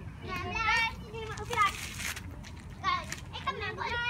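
Children's high-pitched voices calling out in short bursts over an outdoor game.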